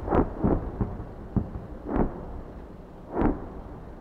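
Distant shelling: a series of about six deep booms at irregular intervals, each rumbling away, one sharper crack about a second and a half in.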